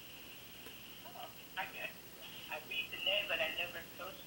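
A faint, thin-sounding voice coming over a phone-like speaker, talking in short phrases from about a second in.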